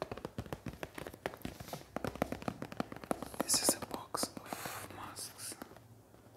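Fingernails tapping rapidly on a cardboard box of disposable face masks: a dense, irregular run of light taps, with a few soft hissy patches in the second half.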